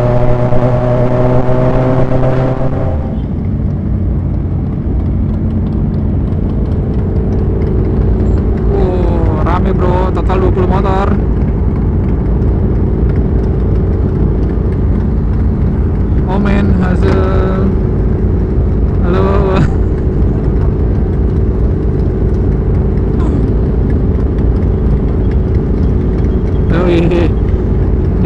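A motorcycle engine running under way, its pitch easing down slightly. About three seconds in it changes abruptly to the steady low rumble of a pack of big motorcycles idling together, with snatches of voices now and then.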